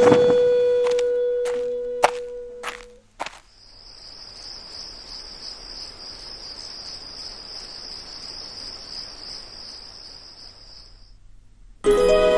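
Crickets chirring steadily at night, starting about three seconds in and stopping shortly before the end. Before that, a held musical note fades out with a few sharp clicks.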